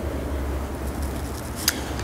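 Steady low background rumble, with one short click near the end.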